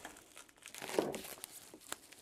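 Plastic packaging crinkling as a wrapped part is handled and lifted out of a moulded case, with a sharp click near the end.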